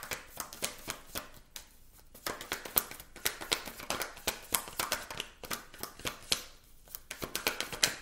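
A deck of tarot cards shuffled by hand: a rapid run of card clicks and flicks that breaks off briefly twice, about two seconds in and again near the end.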